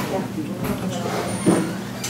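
Low murmur of voices in a meeting room over a steady hum, with one short knock about one and a half seconds in.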